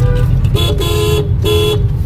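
A vehicle horn honks twice in traffic, first a longer blast and then a shorter one, over the steady low rumble of the car's engine and road noise, heard from inside the car's cabin.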